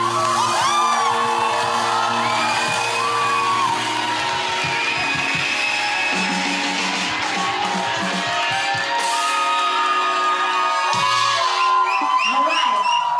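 Live band music with horns holding long chords, with whoops and shouts from a crowd.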